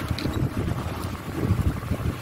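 Low, uneven rumble of air buffeting the microphone.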